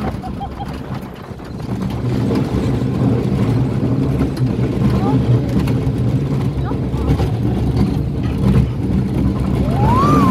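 Roller coaster train being hauled up a lift hill, with the lift drive running as a steady low mechanical drone. Near the end a rider's voice rises and falls in a whoop.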